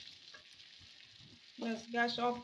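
Fish pickle frying in mustard oil in a wok: a faint, steady sizzle, with the wooden spatula stirring and scraping lightly.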